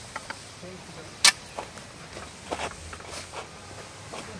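Scattered sharp metallic clicks and knocks from a SALA hand-crank rescue winch on a tripod as rope is fed into it, the loudest single click about a second in and a quick cluster past the halfway point.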